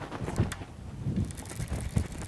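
Wind rumbling on the microphone over water lapping at a bass boat. In the second half there is a quick run of high ticking from a casting reel as a bass is hooked and the line is reeled in.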